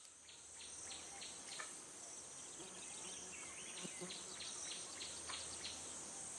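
Outdoor nature ambience fading in over the first second: a steady high-pitched insect chorus, like crickets, with short bird chirps scattered through it.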